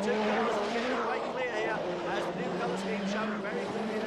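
Rallycross cars' engines revving hard as they race through a corner, their pitch stepping up and down with the throttle and gear changes.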